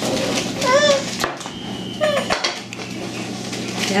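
A young child's short high-pitched vocal sounds, under a second in and again at about two seconds, with a few light clicks between them.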